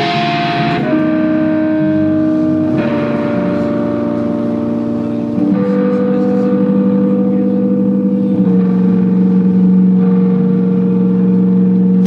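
Live improvised music on electronic keyboard and fretless electric bass, with the saxophone resting: long held tones stacked into chords that shift every two or three seconds.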